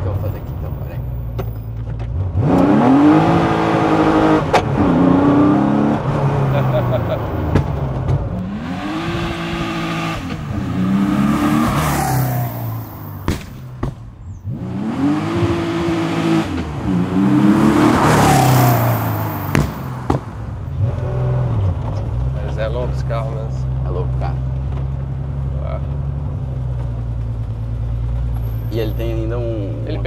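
A high-performance car engine accelerating hard, its revs rising and falling in three strong pulls, then running steadily at low revs.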